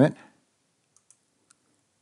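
Three faint computer mouse clicks: two close together about a second in, and a third half a second later.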